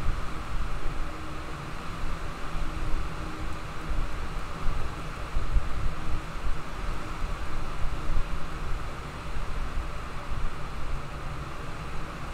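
Steady background noise with no speech: a low rumble with a hiss above it.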